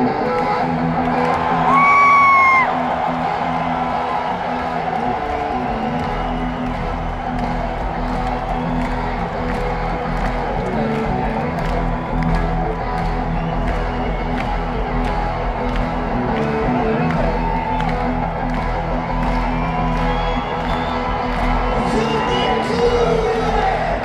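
Live rock band playing loudly, heard from within the festival crowd, with a brief high wailing glide about two seconds in as the loudest moment and a deep bass coming in about six seconds in. Crowd noise and cheering sit under the music.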